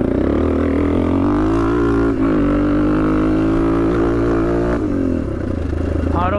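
Yamaha HL500 replica's 500cc four-stroke single-cylinder motocross engine pulling under throttle. Its pitch climbs a little and holds steady, then the revs fall away a little before the end.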